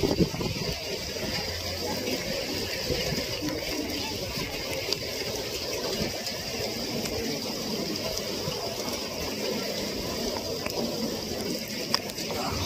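Steady rushing wind noise buffeting the microphone of a handheld camera while the wearer moves through the air on a rope course.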